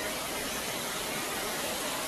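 Steady rushing hiss of a small water fountain splashing, even and unbroken, under the general noise of a large terminal hall.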